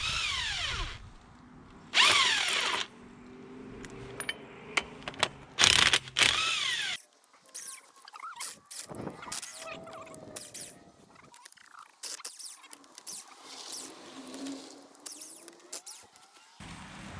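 Cordless power tool spinning a socket on the hydrant's bonnet bolts in three short trigger bursts, each winding down in pitch as it stops. After about seven seconds, quieter metal clicks and brief squeaks follow as the loosened parts are worked by hand.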